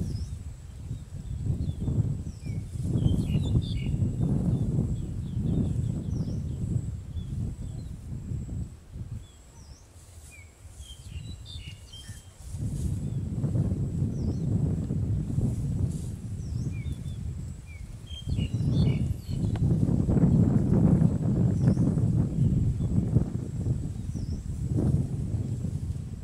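A low rumbling noise in long bouts, easing off for a few seconds near the middle, with small birds chirping in short bursts a few times over it and a faint steady high whine.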